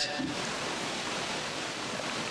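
Steady hiss of background noise, with no other distinct sound.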